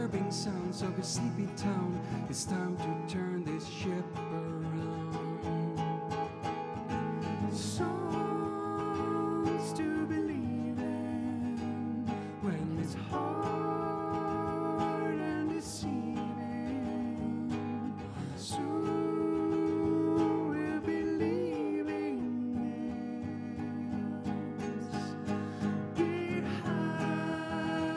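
An acoustic guitar strummed steadily under long sung notes in several phrases, a live song played and sung.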